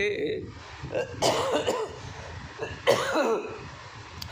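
A man coughing twice, harshly, in a break in his speech: once about a second in and again about three seconds in.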